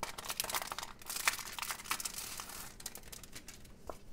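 A clear plastic sticker sleeve crinkling and crackling as a sticker sheet is slid out of it. The crackle is dense at first and thins out toward the end.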